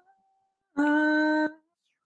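A woman singing one held 'ah' backing-vocal note about a second in, steady in pitch, lasting under a second and cutting off abruptly, heard over a video call.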